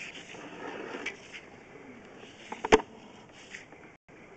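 Sewer camera push cable being pulled back through the line: faint scraping and handling noise, with one sharp, loud knock a little past halfway.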